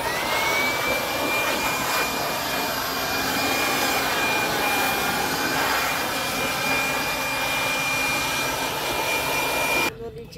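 Handheld electric blower spinning up with a rising whine, then running at a steady high whine with rushing air as it blows over a freshly carved bonsai trunk to clean it. It cuts off abruptly just before the end.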